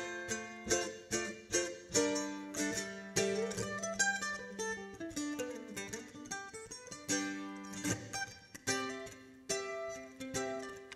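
F-style mandolin played solo, picking a melody whose notes and double-stops ring over long held low notes.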